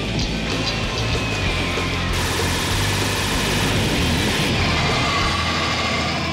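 Animated sound effect of a rotating-barrel gun firing in rapid fire, a dense continuous stream of shots that is thickest for a couple of seconds in the middle, over dramatic background music.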